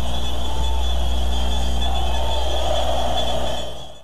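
Steady background noise of an old broadcast soundtrack, with a constant low hum and a thin high tone, fading out near the end.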